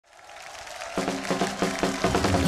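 A live band strikes up a trot song intro about a second in, with chords on a steady beat, after a second of crowd noise fading in.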